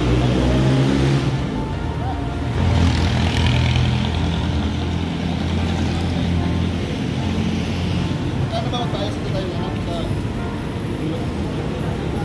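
Street traffic, with a motor vehicle's engine running steadily close by.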